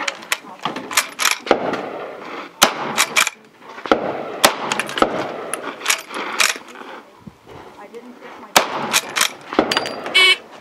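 A reproduction Winchester 1866 lever-action rifle being fired in a timed stage. About half a dozen irregularly spaced shots begin roughly two and a half seconds in, with smaller clicks and clatter of the rifle being raised and the lever worked before and between them.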